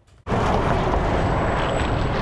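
A large road vehicle passing close by, a steady rush of engine and road noise that cuts in suddenly just after the start.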